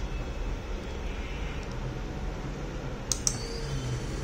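Steady low hum with two sharp clicks a fraction of a second apart about three seconds in.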